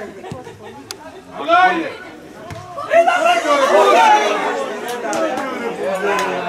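Several voices shouting and calling out over one another on a football pitch, with a short burst about one and a half seconds in and a louder, longer burst of overlapping shouts from about three seconds in.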